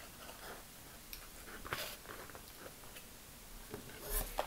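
Faint rustles and clicks of a cardboard perfume box being opened and the glass bottle taken out, with a few sharper clicks near the middle and just before the end.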